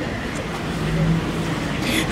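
Low, steady rumble of a motor vehicle engine running nearby.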